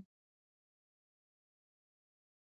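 Near silence: the sound drops out completely.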